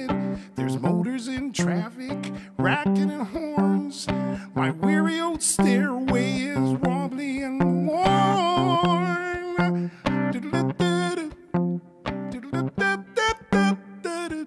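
Live song on a hollow-body archtop guitar, played in a steady rhythm of repeated bass notes and chords, with a man singing over it in the middle stretch.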